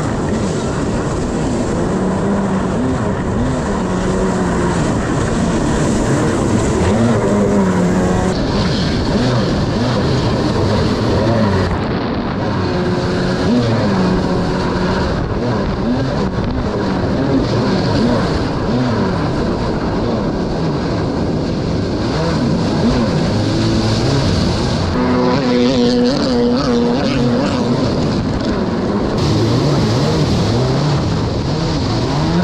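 Yamaha stand-up jet ski's engine running hard at speed, its note rising and falling again and again as the throttle is worked, over a constant rush of water.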